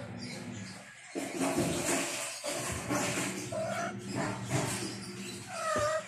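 Kittens mewing: a few short calls, the clearest one near the end.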